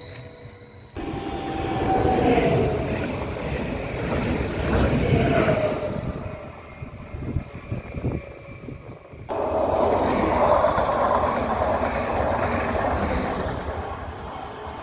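Electric regional multiple-unit trains (Stadler FLIRT) running past on the track, in spliced clips: the sound cuts abruptly about a second in and again about nine seconds in. Wheel and running noise with a falling whine as a train passes, a quieter stretch in the middle with a few sharp crackles, then a train loud and close to the end.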